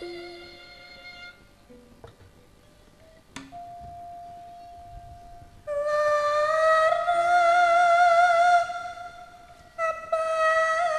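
Javanese sinden singing through a microphone: after a softer stretch with a single steady held note, her voice comes in loud about six seconds in and holds a long note with vibrato for about three seconds, then breaks off and comes back just before the end.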